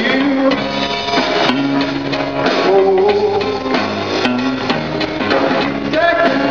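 Live band music with guitar and drums, and a man singing.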